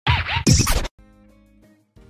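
Transition jingle with a record-scratch effect: a loud scratched burst with the pitch swooping up and down, ending about a second in, then a soft held chord of music.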